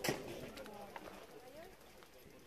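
A single sharp knock right at the start, then faint voices in the background.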